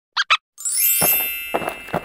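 Two short squeaky cartoon giggles, then a bright sparkling chime sound effect that rings out and slowly fades, with a few lower notes beneath it.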